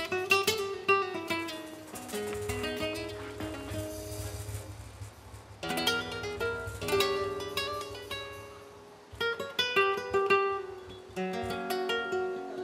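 Flamenco guitar playing: bursts of rapid strummed chords alternating with picked single-note phrases.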